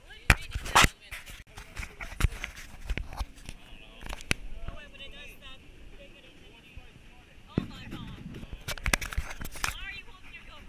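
Indistinct nearby voices mixed with a run of sharp knocks and clicks, the loudest in the first second and again in the last two seconds.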